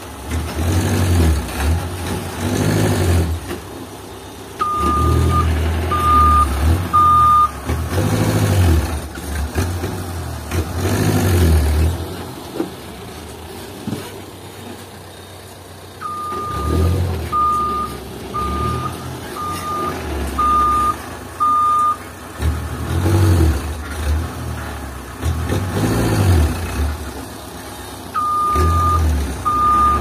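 Old Toyota Dyna dump truck manoeuvring over dirt, its engine revving up and dropping back in repeated surges. Its reversing beeper sounds in short runs of evenly spaced beeps, about one a second, three times over.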